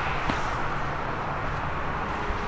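Steady outdoor background noise: an even, low rush with no distinct events.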